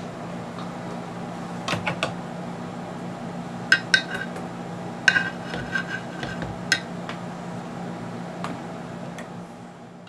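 A series of sharp metallic clinks and clicks, some ringing briefly, over a steady low hum.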